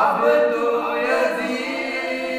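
Two male voices chanting a soz, the Shia mourning lament, unaccompanied, in long held melodic lines. A new phrase begins right at the start.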